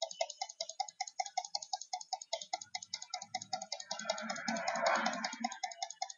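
Rapid, even clicking, about seven clicks a second, with a brief louder rustling noise in the second half.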